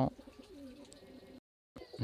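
Faint, low cooing of a bird in the background, broken off by a brief moment of dead silence a little past the middle.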